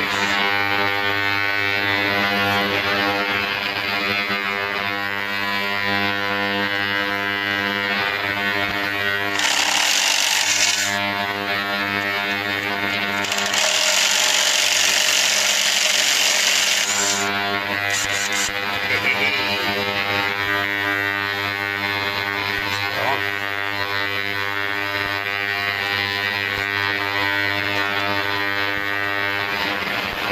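A steady drone with even overtones, music-like, runs throughout. Over it, a cordless power driver runs twice, briefly about nine seconds in and then for about four seconds from around 13 seconds, turning a rusted bolt on a steel exhaust bracket.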